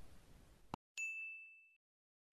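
A single bright 'ding' chime, one clear ringing tone that fades out within about a second, preceded by a faint click: the notification-bell sound effect of an animated subscribe-and-bell-icon click.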